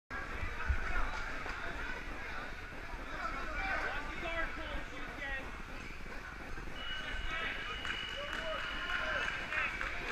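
Many overlapping voices chattering at once: a crowd in a large tournament hall. A thin, steady high tone sounds over it for about three seconds in the second half.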